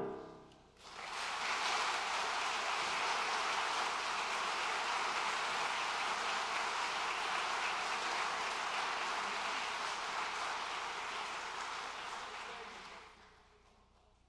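The last piano chord dies away, then an audience applauds steadily for about twelve seconds, tapering off near the end.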